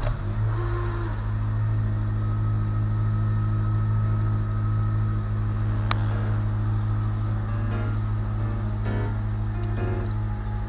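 Honda Civic Si four-cylinder engine catching on its first start after an oil pan replacement, then idling steadily and high, around 2000 rpm on the tachometer. A short rising chirp comes about six seconds in.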